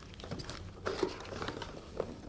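Faint rustling and scraping of a cardboard box being opened by hand, with a few soft clicks and a slightly louder handling noise about a second in.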